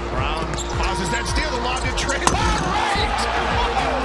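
Game sound from basketball play: a ball being dribbled on a hardwood court, with repeated thuds, short squeaks and voices from the game over background music.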